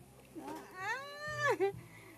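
A high-pitched human voice drawing out one long vocal sound that rises in pitch and holds, breaking off a little before the end.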